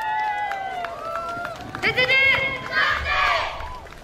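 Children's voices shouting long, drawn-out calls, with a loud group shout about two seconds in.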